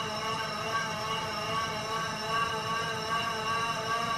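Bicycle rollers spun by the bike's wheels while the rider pedals, giving a steady, even whine with a slight waver.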